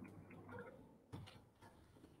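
Near silence with a few faint computer keyboard clicks as text is typed.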